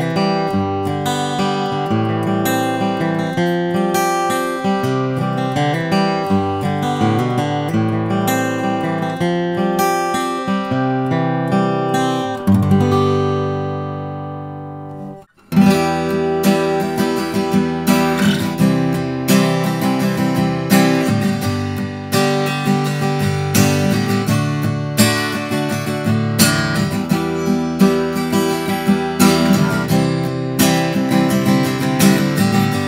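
Martin GPC-X2E acoustic guitar fingerpicked, running through notes and chords and ending on a chord that rings out and fades. After a cut about halfway through, it is strummed in a steady chord rhythm. The guitar is heard acoustically through stereo microphones, not through its pickup.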